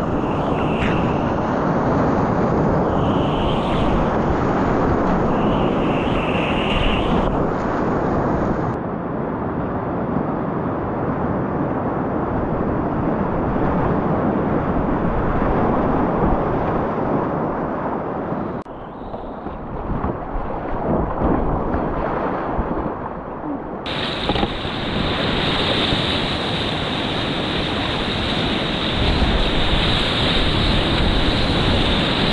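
Whitewater rapids rushing loudly around a kayak, the churning water close to the microphone. The rush changes abruptly three times along the way.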